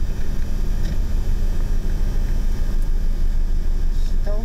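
A vehicle's engine running steadily: a loud, even low rumble with a faint steady hum over it.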